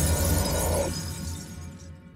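Tail of a glass-shatter sound effect over a deep bass rumble, fading away over about two seconds.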